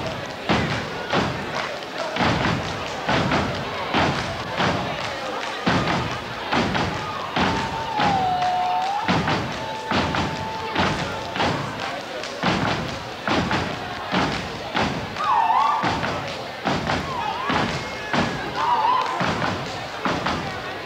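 A step team stomping and clapping in unison, a steady rhythm of heavy thuds about one to two a second, with voices chanting along. A long high held call comes near the middle, and a few short sliding calls come near the end.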